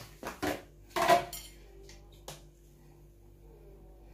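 Stainless steel mesh strainer knocking and clinking against a ceramic bowl as it is set in place: a handful of short knocks in the first second and a half, and one small click a little later.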